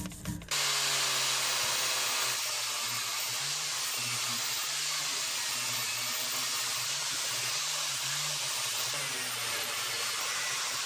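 Angle grinder with a spinning wheel grinding rust off an iron hammer head held in a vise: a steady grinding noise over the motor's hum. It comes on strongly about half a second in and eases slightly a little after two seconds.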